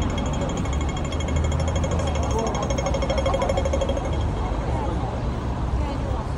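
Rapid, fast-repeating electronic ticking of a pedestrian crossing signal, fading out about four seconds in, over a steady low rumble of city traffic.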